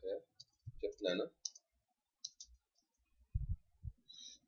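A few sharp computer keyboard keystroke clicks as code is typed, followed by a couple of dull low thuds near the end.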